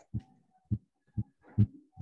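Four soft, dull low thumps about half a second apart, like knocks or bumps on a desk picked up by a video-call microphone.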